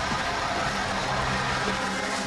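Hand-held fire extinguisher discharging in a steady hiss, with a low steady hum underneath.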